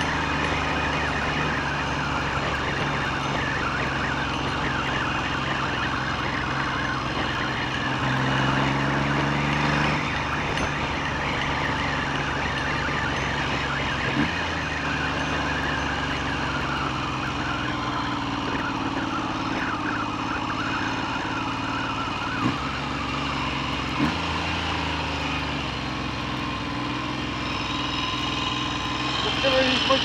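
Triumph Trident T150V three-cylinder engine running under way, with wind rushing over the microphone; the engine note rises about eight seconds in and breaks briefly about fourteen and twenty-four seconds in. The rider reckons its carburettors need adjusting.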